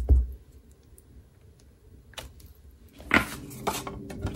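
A clear acrylic stamp block tapped on an ink pad, a few soft thumps that stop within half a second, then quiet with faint ticks. About three seconds in, cardstock being handled, with rustles and light clicks.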